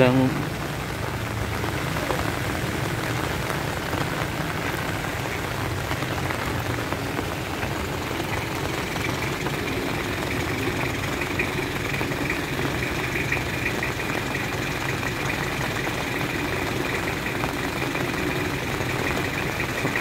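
Steady hiss of rain and of cars and motorbikes running and passing on a wet road. A faint steady high whine joins about halfway through.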